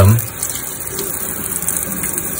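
Tap water running steadily into a sink and splashing as a puppy is bathed under it.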